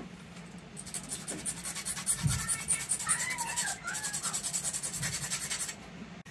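A hand file scraping a small metal washer in rapid, even back-and-forth strokes, starting about a second in and stopping just before the end, with a single low knock a little past two seconds. The file is opening the washer's gap so it can slip around a cable collar.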